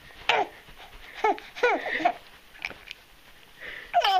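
Baby laughing in high-pitched squeals: about four short calls, each sliding down in pitch, with breathy laughter between them.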